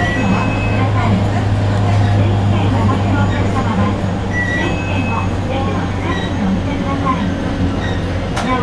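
815 series electric train running, heard from the front of the car: a steady low hum, with a brief two-note high beep recurring about every four and a half seconds.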